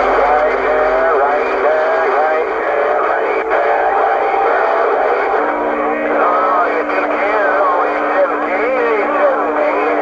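CB radio (Cobra 148 GTL) speaker on receive, putting out a crowded AM channel: a thin, narrow-band wash of garbled, overlapping voices and warbling whistles over hiss. Two steady heterodyne tones join in about five and a half seconds in.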